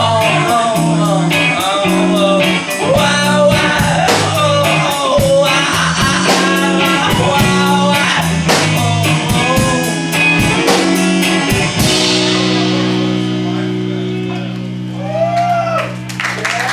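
Live rock band playing: electric guitar, a drum kit keeping a steady beat and a man's voice singing. About twelve seconds in the drumming stops and a last guitar chord rings out and slowly fades, ending the song.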